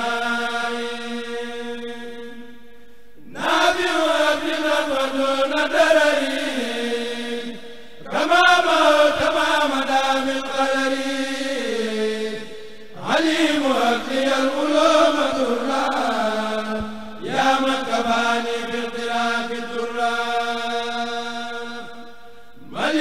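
A kurel, a Mouride group of men, chanting an Arabic religious poem together over microphones, in long held phrases of four to five seconds with short breaks between them.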